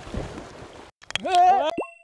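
Water splashing as a person falls off a paddleboard into a pool, followed about a second in by a loud, wavering cartoon-style sound effect added in the edit.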